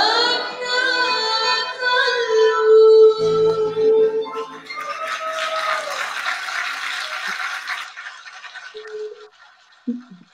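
Live concert recording of a female singer with violin, acoustic guitar and piano, ending on one long held sung note. Audience applause follows about halfway through and fades out near the end.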